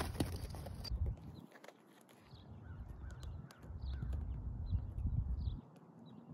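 Wind buffeting the microphone in uneven gusts, with a few light knocks in the first second or two and small bird chirps scattered through.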